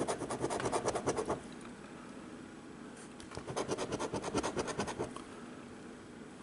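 A coin scratching the coating off a lottery scratch ticket in rapid back-and-forth strokes, in two bursts: one at the start and another from about three seconds in.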